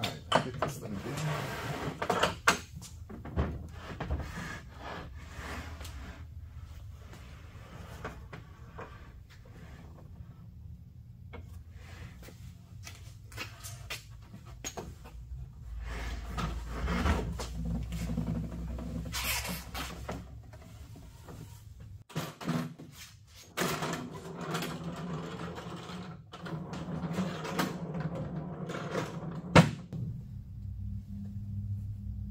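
A wooden tool stand with retractable steel casters being lifted, turned over and set back down, giving irregular knocks and clunks of wood and metal.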